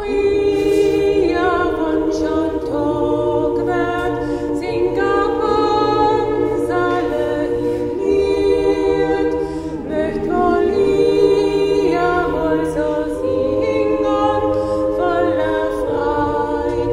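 Mixed choir of women's and men's voices singing a cappella in several parts, holding sustained chords that move together.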